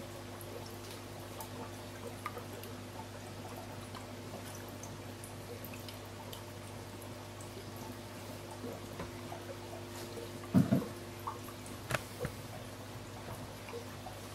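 Aquarium air pump humming steadily while air-driven sponge filters bubble and drip at the water surface. A louder bump comes about ten and a half seconds in, with a couple of small knocks a second or so later.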